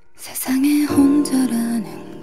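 Music: a slow ballad with a female voice singing a line over soft, sustained instrumental backing. It comes in about half a second in, after a quiet start.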